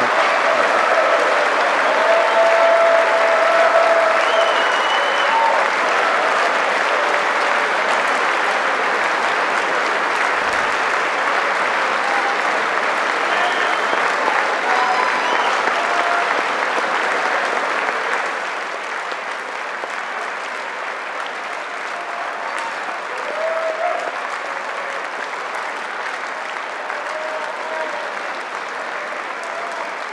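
Sustained applause from a large audience in a big hall, with scattered voices calling out through it. It eases a little in loudness about two-thirds of the way through.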